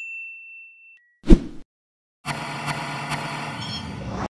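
Editing sound effects on an animated subscribe screen: a notification-bell ding rings and fades out over the first second, a short loud hit with a low thump follows, then a dense steady rushing noise fills the last part as the picture washes out white.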